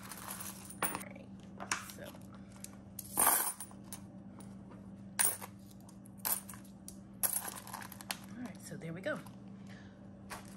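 Coins clinking as they are dropped one by one into a small metal-framed kiss-lock coin pouch, a clink every second or so, the loudest and longest rattle about three seconds in.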